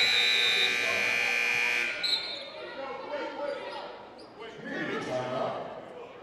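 Gym scoreboard horn sounding one steady, loud blast for about two seconds and then cutting off, signalling a stoppage in play. Voices and court noise follow in the large, echoing gym.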